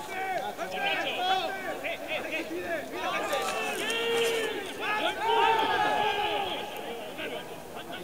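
Several men shouting and calling over one another in Spanish, the on-field calls of rugby players around a ruck.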